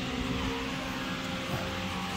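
Steady workshop background noise: a low hum with an even hiss, and no distinct knocks or tool sounds.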